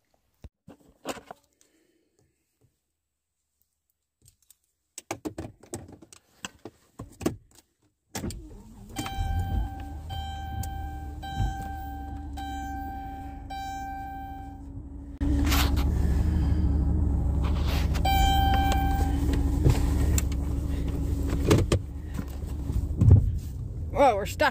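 Inside a van: a few clicks and knocks, then about eight seconds in a low engine rumble begins while the dashboard warning chime beeps in repeated bursts. About fifteen seconds in the engine sound steps up louder, and the chime sounds once more briefly.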